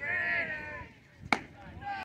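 A person's long, high-pitched drawn-out yell as the pitch is thrown, then a single sharp crack of the baseball being hit or caught just over a second in.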